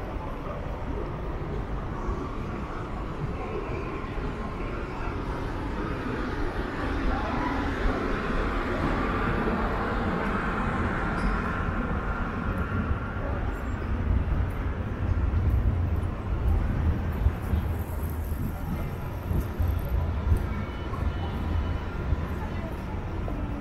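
Town street ambience: a steady mixed hum of distant traffic and passersby, with a deeper, heavier rumble in the second half.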